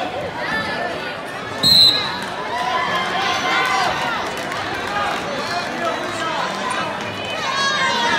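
Spectators and coaches shouting at a wrestling bout, several voices at once, with one short, sharp referee's whistle blast about two seconds in, the loudest sound.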